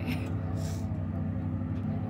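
A distant boat engine running with a steady low hum. A brief hiss comes a little under a second in.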